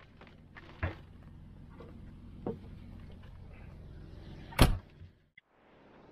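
Motorhome entry door being unlatched and opened: a sharp click from the metal latch just under a second in, a softer click about two and a half seconds in, and a single loud bang about four and a half seconds in, over a steady background hiss.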